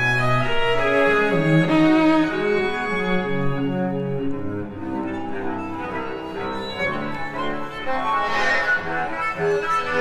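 Live string quartet playing, with violins and cello bowing held, overlapping notes that change every second or so.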